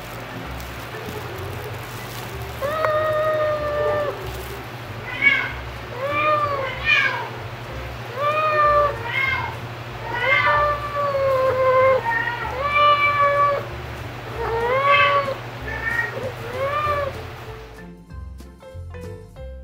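Young ginger cat meowing insistently for food, about ten meows one after another starting a little over two seconds in, several rising and then falling in pitch.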